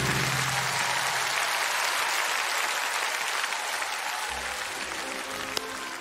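Audience applauding at the end of a stage number, the last note of the accompanying music dying away at the start; the clapping eases a little toward the end.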